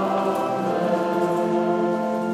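A church congregation singing a hymn together in long, held notes.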